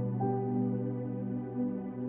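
Slow, soft relaxing piano music in an ambient style, with long held notes; a new note enters shortly after the start.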